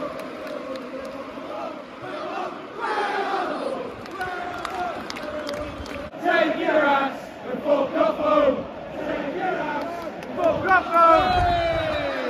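Football crowd in a stadium stand chanting and singing in phrases over a steady background murmur, ending in one long shouted call that falls in pitch.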